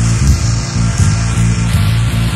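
Loud, bass-heavy rock music from a 1980s goth/indie band's cassette recording, with a steady drum beat.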